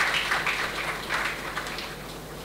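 Audience applauding, the clapping thinning out and fading toward the end.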